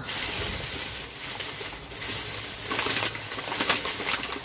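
Thin plastic carrier bags rustling and crinkling as they are handled, with sharper crackles near the end.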